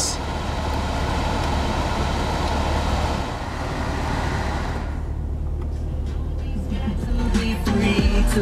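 Air rushing steadily from the climate-control blower, cut off about five seconds in, over the low idle of the supercharged 6.2-litre LS3 V8. Car-stereo music comes up near the end.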